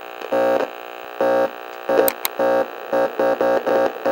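Electronic glitch sound effect: short buzzy synthesized tones that cut in and out in an irregular stutter, with two sharp clicks about two seconds in.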